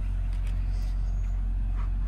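A steady, even low rumble with no distinct events.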